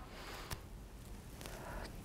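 Quiet room tone with a single faint click about half a second in.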